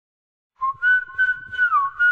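The whistle melody that opens a 90s dance track, coming in about half a second in: short high whistled notes with one downward slide, heard on its own before the beat enters.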